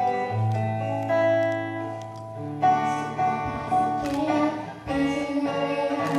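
Acoustic guitar playing chords, accompanying a female and male vocal duet.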